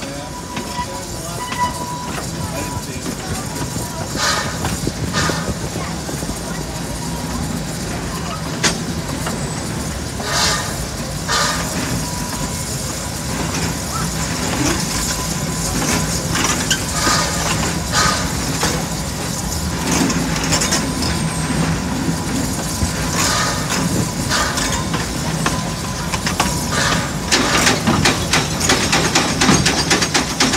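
Propane-fired steam train running along its track, heard from the car right behind the locomotive: a steady running noise with a low hum and scattered sharp clicks and knocks.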